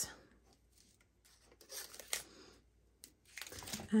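Faint paper handling as a glue dot is peeled off its backing strip: a couple of soft scrapes near the middle and light crinkling near the end.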